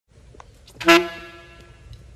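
Tenor saxophone, a Selmer Mark VI, blowing one short, loud honked note about a second in, which rings on and fades out over most of a second. A few faint clicks come before it.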